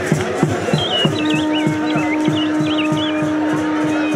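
Ceremonial music with a drum beaten steadily about three times a second. About a second in, a long steady note begins and holds to the end. A high wavering whistle-like sound runs above it for about a second and a half.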